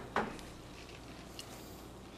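Quiet room tone with a steady low hum and a brief soft sound just after the start.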